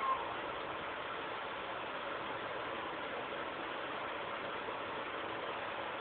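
Steady background hiss of room noise, with a brief faint tone right at the start.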